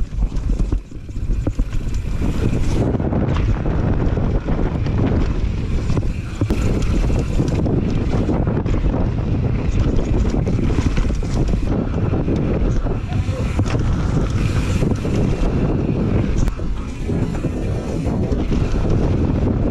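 Wind rushing over a GoPro camera's microphone on a fast downhill mountain bike run, mixed with tyres rolling over dirt and rock and the bike rattling over rough ground.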